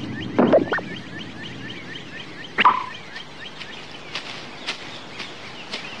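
Cartoon jungle ambience: a steady run of quick, faint chirps, with two short louder calls about half a second and two and a half seconds in.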